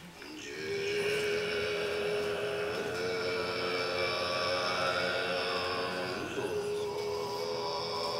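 Tibetan Buddhist ceremonial music of long, steadily held notes, one pitch held with slight bends and a brief waver about six seconds in.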